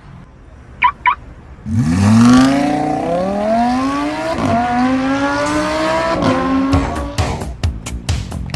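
A sports car's engine revving hard as the car accelerates away. The pitch climbs in each gear and drops back at upshifts about every one and a half seconds, then fades near the end. Two short high chirps about a second in come before it.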